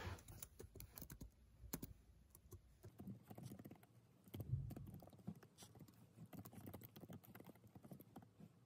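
Quiet typing on a laptop keyboard: irregular soft key clicks, several a second, with a dull low thump about halfway through.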